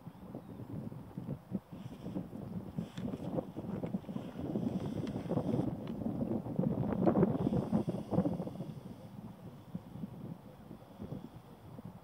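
Wind gusting across the microphone, an irregular low rumble that builds to its strongest about seven seconds in and then dies away.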